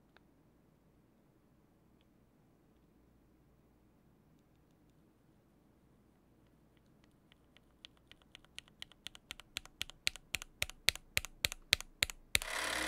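Typing on a ZZanest Elements75XT mechanical keyboard in stock form: factory-lubed Gateron Oil King linear switches on an aluminium plate, with thick case and plate foam and GMK ABS keycaps. The keystrokes are barely audible at first, then grow steadily louder into a fast run of clicks over the second half. The sound is balanced: not too loud, not too muted, not too clacky.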